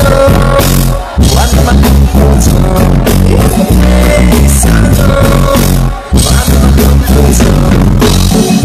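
A reggae rock band playing live on stage, with heavy bass, drums, electric guitar and keyboards. The music is loud, and the band drops out briefly twice: about a second in and again about six seconds in.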